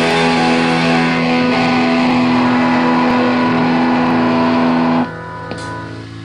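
A live rock band, with electric guitar, bass and cymbals, holds a loud final chord at the end of a song. About five seconds in the sound drops off suddenly, leaving quieter ringing guitar notes.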